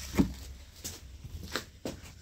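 A few light, irregular knocks and rustles as the person filming moves around the car with a handheld camera.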